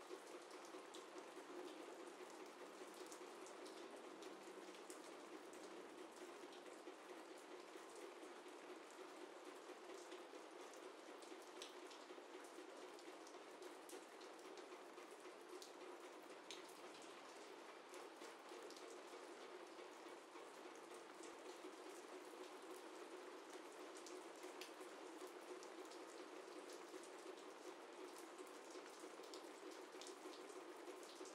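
Faint steady rain: an even hiss scattered with many small raindrop ticks.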